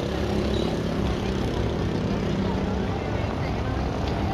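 Street traffic: a vehicle engine running steadily close by in slow-moving traffic, with voices of people on the street in the background.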